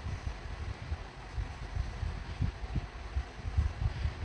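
Low, irregular soft thumps and rumble from handling as hands work a crochet hook through red yarn, with a faint steady hiss behind.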